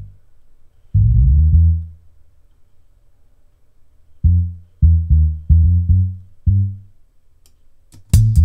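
Deep sampled bass notes sounded singly as bass-line notes are dragged to new pitches: one held note about a second in, then six short notes in quick succession from about four seconds in.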